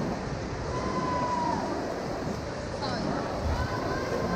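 Swimmers splashing through a freestyle race in a large indoor pool hall: a steady wash of water noise mixed with indistinct voices from the deck.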